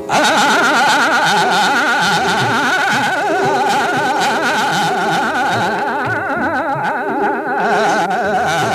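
Hindustani khayal music in raga Multani: a male voice singing fast, heavily oscillating taan passages over a steady tanpura drone, cutting in loudly right at the start.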